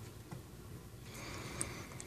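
Quiet room tone with one faint click about one and a half seconds in, fitting a finger pressing a button on a plug-in power meter.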